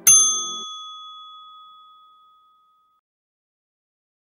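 A single bright bell ding, a notification-bell sound effect, struck once and ringing out over about two and a half seconds, its higher overtones dying first.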